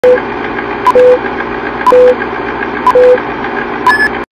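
Vintage film countdown leader sound effect: a steady, noisy projector-like whir with fast faint ticking, and once a second a sharp click followed by a short beep, four times in all.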